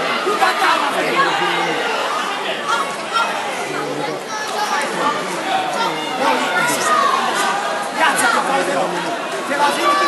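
Crowd chatter: many voices talking over one another in a large hall.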